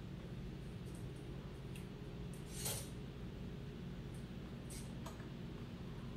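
Gas stove burner running steadily under a pot of heating oil, a low hum with a few faint ticks. There is one short hiss about halfway through.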